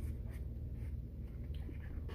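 Light scraping and a few soft clicks of a plastic fork working food in a plastic frozen-meal tray, over a steady low hum.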